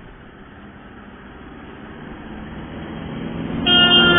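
A motor vehicle on the street approaching and growing louder, then sounding its horn, a steady honk that starts shortly before the end.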